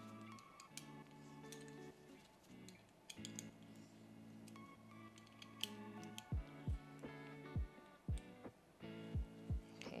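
Background music: held synth chords, joined about six seconds in by a beat of deep bass kicks that drop in pitch.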